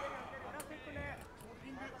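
Faint voices over a low, steady arena background: a quiet lull between louder bursts of commentary.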